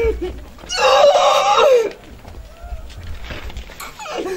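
A woman's loud, high-pitched wailing cry, about a second long, rising and then falling in pitch, starting just under a second in; quieter voices follow.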